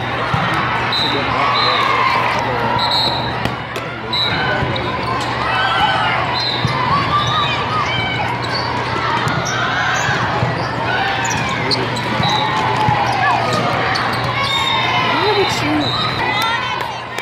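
Busy volleyball hall: many overlapping voices of players and spectators. Scattered sharp thuds of volleyballs being hit and bounced come from the courts, with short high chirps from time to time.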